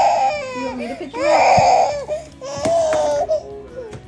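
Toddler crying in a tantrum: three long wailing cries in a row, the last one falling off near the end.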